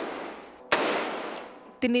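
A single rifle shot about two-thirds of a second in, followed by an echo that fades over about a second; the fading echo of another shot fired just before is heard at the start.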